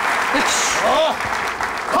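Live studio audience applauding, with a voice briefly calling out over the clapping about half a second in.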